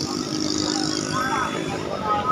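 Steady hum of a motor vehicle engine running on the road, with faint voices of people briefly about a second in.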